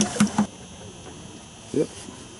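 Men's voices in short fragments at the start and again briefly near the end, over a faint steady background hum.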